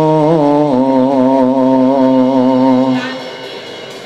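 A man singing one long held note into a microphone, with a slight waver in the pitch. The note fades out about three seconds in.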